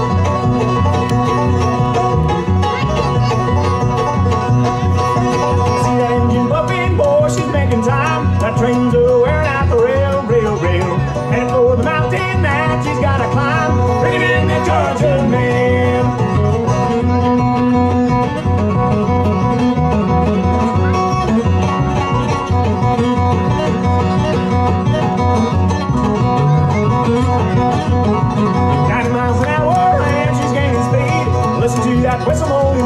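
A bluegrass band playing an instrumental passage live, with banjo, fiddle, acoustic guitar and upright bass over a steady driving rhythm. A sliding fiddle melody stands out through the middle.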